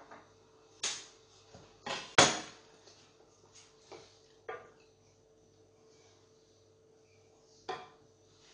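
A wooden spoon stirring cream in a stainless steel saucepan, knocking against the pot several times, the loudest knock a little past two seconds in. A faint steady hum runs underneath.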